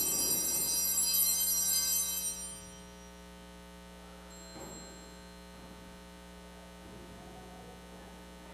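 Altar bells rung at the elevation of the host: a bright, high ringing that fades away about two and a half seconds in. After that only a steady electrical hum is left.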